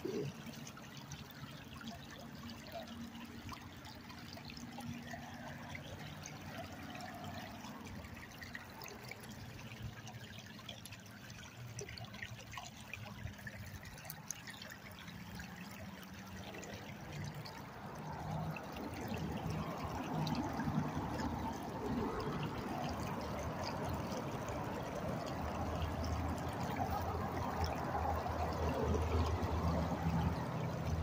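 Creek water running and trickling, a steady rushing with no distinct events, which grows louder about two-thirds of the way through as a low rumble joins in.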